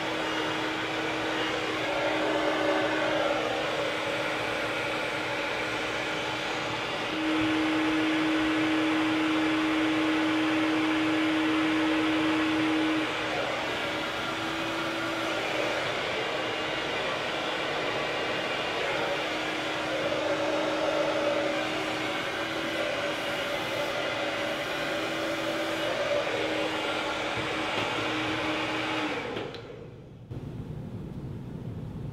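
Hand-held hair dryer running steadily, a rush of air with a steady hum, louder for about six seconds partway through. It stops abruptly near the end.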